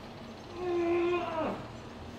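A man's long vocal groan with no words, held on one pitch for about a second, then sliding sharply down in pitch as it ends.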